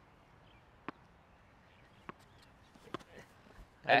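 A tennis ball dropped onto a hard court, bouncing three times with sharp, short pops, each bounce coming a little sooner than the last.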